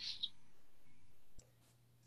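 A woman's short breathy laugh trailing off over faint room tone, then a single soft click about one and a half seconds in, after which the sound drops out.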